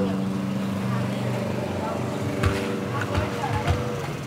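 HPI RC crawler truck's electric motor and gears whirring steadily as it drives, with a few light knocks in the second half. Voices can be heard behind it.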